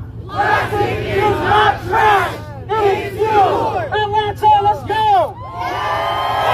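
A large crowd chanting and shouting together in a repeated rhythmic call, swelling into sustained cheering near the end.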